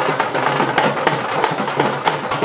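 Several dhols, double-headed barrel drums, beaten together with sticks in a fast, loud, steady rhythm.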